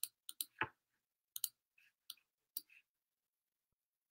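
Faint short clicks from a computer being worked, about eight of them at irregular spacing over the first three seconds.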